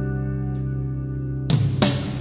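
Country-rock band recording in an instrumental passage: a guitar chord rings out steadily, then about a second and a half in the band comes back in with sharp hits and strummed guitar.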